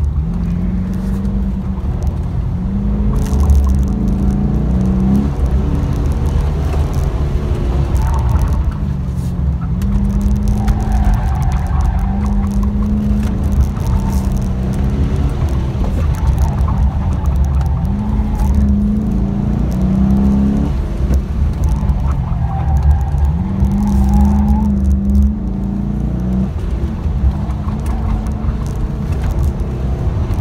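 Pontiac G8's engine heard from inside the cabin, repeatedly climbing in pitch and dropping back as the car accelerates and lifts through an autocross course.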